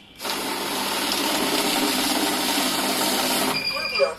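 Paras 1515 mixed-value currency counting machine feeding a stack of banknotes through at speed, a steady dense rush that starts just after the beginning. The rush cuts off about three and a half seconds in and a single steady electronic beep sounds: the machine halting as it detects a fake note.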